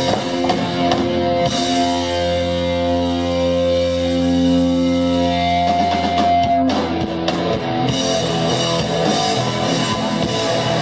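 Live rock band playing with electric guitars and drum kit. A chord is held and left ringing from about two seconds in, then the band breaks back into full playing with drums about two-thirds of the way through.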